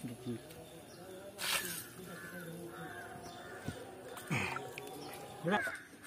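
Crows cawing several times in the background. A sharp knock about one and a half seconds in, as a concrete block is set down on the ground.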